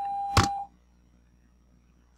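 A steady high-pitched electronic tone that cuts off just after a single sharp mouse click, about half a second in; then near silence.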